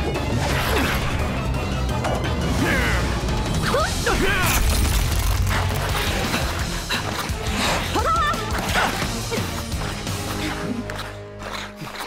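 Cartoon action-scene soundtrack: dramatic background score mixed with repeated crash and impact sound effects.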